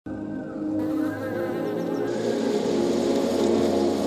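Honeybees buzzing in a steady drone, with background music.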